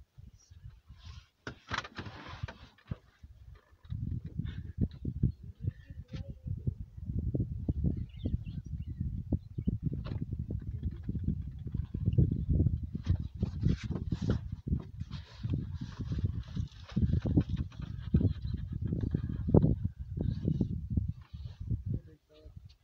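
Gusty low rumbling of wind buffeting a phone microphone. It sets in about four seconds in and keeps surging louder and softer.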